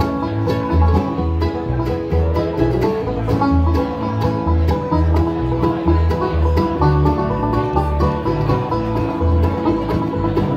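Live bluegrass band playing with no words sung: banjo rolls, acoustic guitar, mandolin, resonator guitar, and an upright bass thumping out a steady beat of about two notes a second. It is heard through a phone's microphone.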